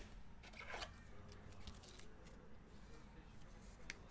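Near silence: faint room tone with a few soft clicks and rustles of trading cards being handled, one about a second in and one near the end.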